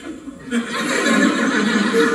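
Comedy-club audience laughing, a loud burst of many voices that breaks out about half a second in and keeps going.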